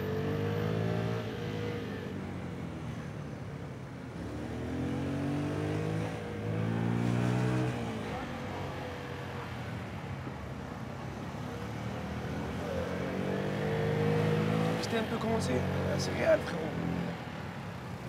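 Motor scooter engine running under way, its pitch rising and falling in several surges as it accelerates and eases off.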